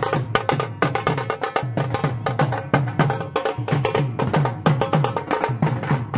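Procession drumming: a two-headed dhol barrel drum and small side drums beaten with sticks in a fast, steady rhythm. Dense sharp stick strokes run over low drum beats that come about three times a second.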